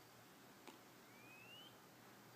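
Near silence: faint room hiss, with one faint click about two-thirds of a second in and a faint short rising whistle about a second later.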